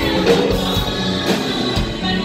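A live rock band of electric guitar, bass and drum kit playing, with a woman singing into a microphone over it. The drum hits come about twice a second.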